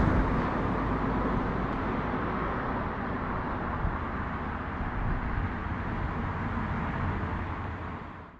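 Road traffic noise outdoors: a vehicle's tyre and engine noise, loudest at the start and slowly fading away.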